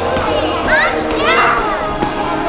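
A group of young children shouting and chattering as they play, with two high-pitched calls, one a little before the middle and one just after it.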